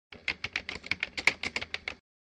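Typewriter-key sound effect, a rapid run of sharp clicks at about eight a second, typing out a line of on-screen title text. It stops suddenly as the line is complete.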